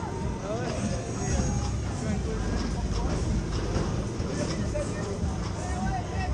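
A swinging pendulum fairground ride running, with voices and music carrying over the fairground's loudspeakers.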